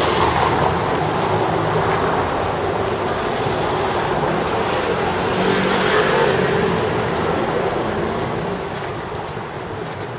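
City street traffic noise: a steady rumble of vehicle engines and tyres that swells about six seconds in, as a car passing close would, and eases off near the end.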